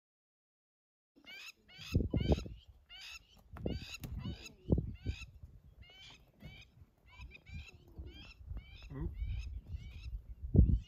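Birds calling in a rapid series of short, repeated falling notes, starting about a second in and running on, over irregular low thumps and rumbles in the grassland outdoor sound.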